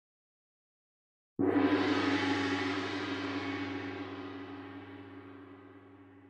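A single deep metallic strike about a second and a half in, ringing on with many steady tones and slowly fading: a sound-effect sting for an animated logo intro.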